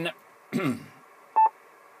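Steady band-noise hiss from a Yaesu FT-857D ham transceiver's speaker, tuned to the 10 m band, with one short key beep about a second and a half in as a front-panel button is pressed to set the ATAS antenna tuning.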